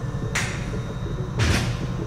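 Two brief scraping handling noises from the metal suspension parts of a display stand being moved by hand, the second louder and fuller, over a low steady hum.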